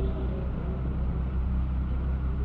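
Steady low hum and hiss of an old 1950s tape recording of a live sermon in a pause between phrases.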